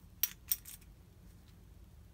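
Metal washers clinking together as they are picked up and set down by hand: two sharp clinks about a quarter and half a second in, with a fainter one just after.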